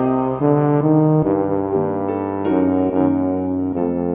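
Bass trombone melody from a Garritan sampled instrument played back by computer, over piano chords: a slow, lyrical phrase of sustained notes.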